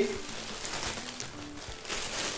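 Plastic courier mailer bag rustling and crinkling as hands rummage inside it and handle it.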